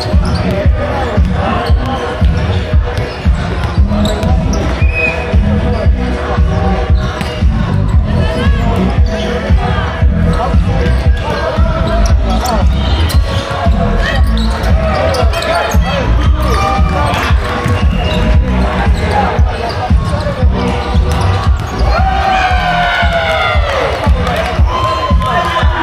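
Volleyball play in a sports hall: the ball is struck again and again and shoes hit the wooden court, as a string of sharp impacts. Voices and background music run underneath.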